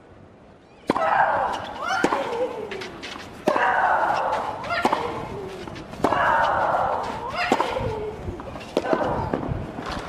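Tennis rally: racket strokes on the ball about every 1.3 s, starting with the serve about a second in. With each stroke comes a player's cry. The loudest are long, falling shrieks on every other shot, at the serve and twice more, and shorter grunts come on the shots in between.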